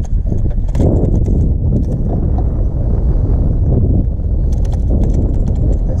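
Loud, continuous low rumble of wind and handling noise on a body-worn camera's microphone, with a few scattered knocks, as an angler brings a hooked fish to the boat.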